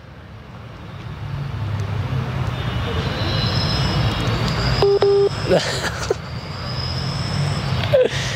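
A low rumble builds up and stays. About five seconds in, a single short electronic beep sounds from a mobile phone held up to the microphone during a call.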